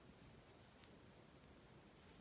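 Near silence, with a few faint, brief scratchy swishes about half a second in: beading thread being drawn through seed beads with a needle.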